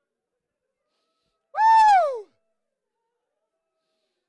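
A single high-pitched cry from a person's voice, under a second long, rising slightly and then sliding down in pitch, about one and a half seconds in; otherwise silent.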